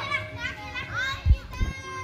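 Children's high voices calling out and chattering, with two dull low thumps about a second and a half in.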